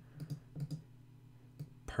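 A few light clicks of computer keys and a mouse, saving a file and refreshing the browser: several within the first second and one more about a second and a half in, over a faint low hum.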